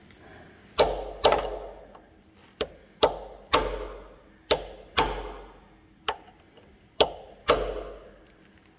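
About ten hammer blows on a brass drift held against the Woodruff key in the crankshaft nose of a 1936 Caterpillar RD-4 engine, knocking the key loose; the strikes come singly and in quick pairs, each ringing briefly.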